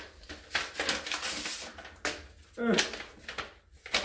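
A paper envelope and its contents being opened and handled: a run of short rustles and crinkles.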